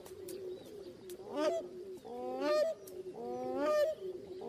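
Crowned cranes calling during their courtship display: three loud calls about a second apart, the last two longer, over a low, steady, repeated cooing.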